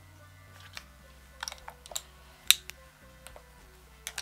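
Quiet background music with a few sharp clicks and taps of small objects being handled. The loudest tap comes about two and a half seconds in.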